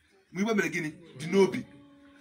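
A man's voice preaching in two short phrases, with a brief pause between them.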